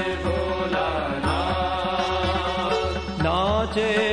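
Music from a Hindi devotional song to Shiva (bhajan): a steady drum beat, about two beats a second, under a melodic line that glides and rises in pitch near the end.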